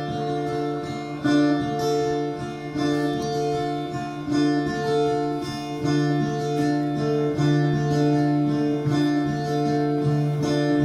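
Solo acoustic guitar playing fingerpicked chords that ring out, with a fresh set of notes struck every second or so.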